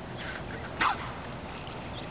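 A dolphin blowing at the surface: one short, sharp puff of breath about a second in, with a fainter puff just before it.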